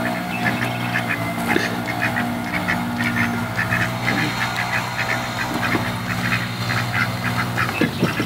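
Ducks, mallards among them, quacking in a rapid, continuous chatter of short calls, begging for food.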